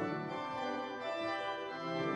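Church organ playing a piece of music: held chords over lower notes that change several times.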